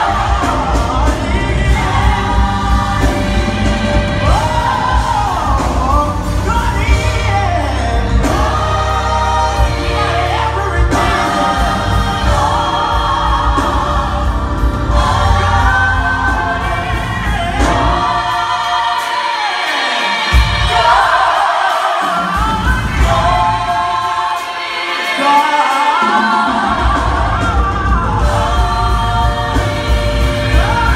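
Gospel choir singing with a lead vocalist over live band accompaniment. The low bass accompaniment cuts out twice in the second half, leaving the voices briefly on their own.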